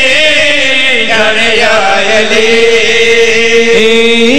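A man chanting a qasida through a microphone and loudspeakers, drawing out a vowel in long, slowly bending held notes.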